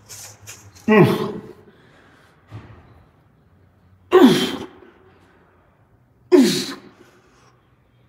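A man's loud effort grunts while lifting dumbbells: three forced exhalations, about a second in, at four seconds and at six and a half seconds. Each starts suddenly, falls in pitch and trails off, one per straining repetition.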